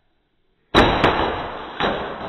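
A loud crash with a ringing tail: two sharp hits in quick succession, then a third about a second later, each dying away slowly.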